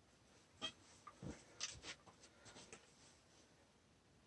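Near silence, with a few faint knocks and rustles in the first three seconds and nothing after.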